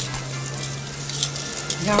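Steady hiss over a low steady hum, with a couple of faint clicks; a voice begins near the end.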